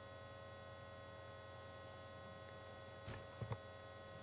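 Faint steady electrical mains hum on the recording, with two short faint clicks a little past three seconds in.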